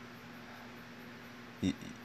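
A pause in a man's speech: faint room tone with a low steady hum, broken near the end by one short voiced sound from him.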